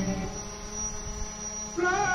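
Steady electrical hum from a public-address system in a pause between sung phrases. Near the end a long held note starts, rising briefly in pitch before settling.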